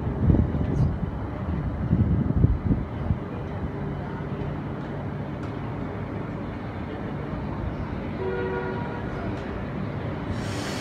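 Queensland Rail NGR electric train approaching a station platform, a steady low rumble that is louder and uneven for the first three seconds. About eight seconds in it gives a short horn toot of two notes together.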